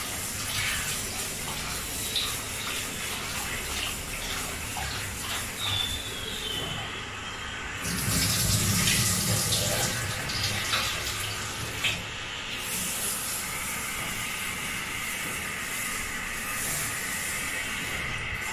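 Kitchen tap running into a stainless steel sink while a metal pot is washed and rinsed, with a few short clinks. The water is louder for a few seconds in the middle as the pot is held under the stream.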